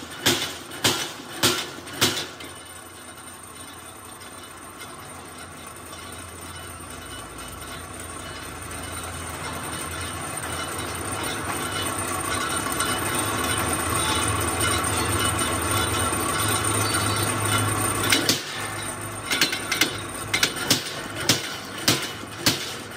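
Flywheel-driven punch press stamping holes in a steel grill sheet: sharp metal clanks about twice a second for the first couple of seconds, and again near the end. In between, with no punching, a steady running drone slowly grows louder.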